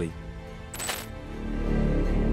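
Background music with a short, bright, metallic chime-like hit about a second in, a transition sound effect. The music grows louder after it.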